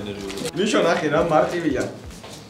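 A person's voice making drawn-out wordless sounds that slide up and down in pitch, cooing-like.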